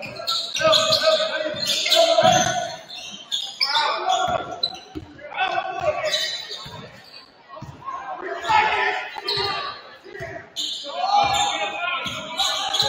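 Basketball dribbling on a hardwood gym floor, in runs of about two to three bounces a second, echoing in a large hall, with voices calling out over it.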